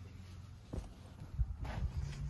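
Footsteps and the handling noise of a hand-held phone being carried across a room, with a few soft knocks in the second half, over a low steady hum.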